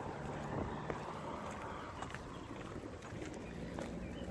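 Steady low wind noise on the microphone, with a few faint scattered taps.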